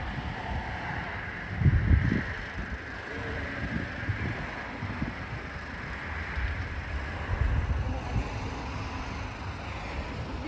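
Cars passing on a road, a rush of tyre noise that swells and fades, with wind buffeting the microphone in low gusts, strongest about two seconds in.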